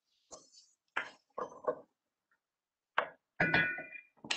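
Kitchen utensil clinking and knocking against a cooking pot as diced potatoes are tossed with spices, in several short separate strikes with silence between. Near the end one clink rings briefly.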